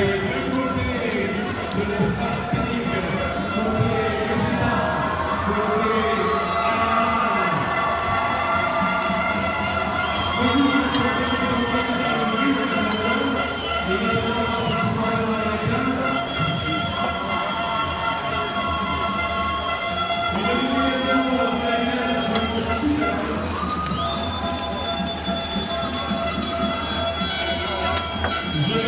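Music with long held tones playing over the murmur of a crowd of people talking.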